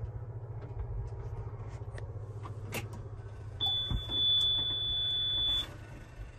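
Komatsu D65PX-17 crawler dozer's diesel engine idling steadily, heard from the cab, with light clicks. A little past halfway, a high electronic beep sounds once and holds for about two seconds.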